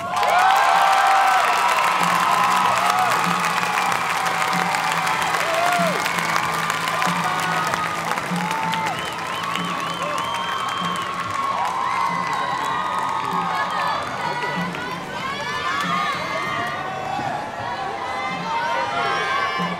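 Arena crowd cheering, shouting and whooping at the end of a trampoline routine. It breaks out suddenly at the start, loudest at first, then eases off gradually.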